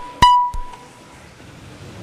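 A single high electronic beep a fraction of a second in, ringing briefly and fading: the last of a series of tones signalling that the roll call vote has opened. A low hubbub of the chamber then rises near the end.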